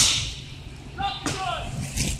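A single sharp knock or slam right at the start, trailing off over a fraction of a second, followed about a second in by fainter shouted voices from further off.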